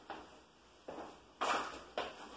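A few short scuffs and knocks from a person moving about and handling painting gear, the loudest about one and a half seconds in.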